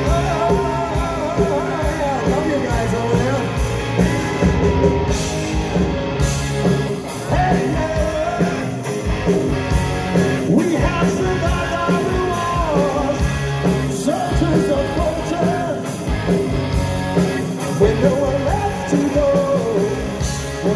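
A rock band playing live: electric guitars, bass guitar and drums, with a male lead singer singing over them.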